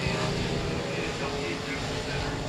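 Several dirt-track limited modified race cars' engines running together at speed around the oval, a steady drone heard from a distance.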